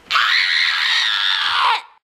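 A girl's loud, harsh scream, held for nearly two seconds and cut off abruptly.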